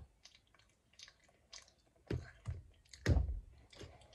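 Chewing a hotteok (Korean sweet pancake), with soft knocks and clicks as a squishy toy is pressed and set down on a tabletop. The two loudest knocks come about two and three seconds in.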